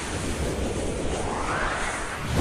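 Whoosh sound effect of an animated end title: a low rumble under a hiss that rises steadily in pitch over about a second and a half.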